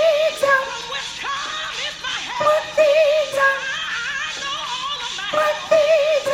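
Gospel choir music with a woman singing the soprano line of the repeated vamp, held notes with vibrato coming back in short phrases: at the start, around the middle and near the end.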